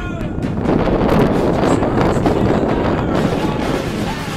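Wind buffeting the microphone with footballers' voices shouting, growing louder about half a second in.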